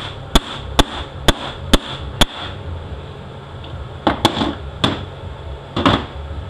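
A mallet striking a seal installer to drive a new seal into a CD4E transaxle case: five evenly spaced sharp taps about half a second apart, then a few lighter knocks near the end.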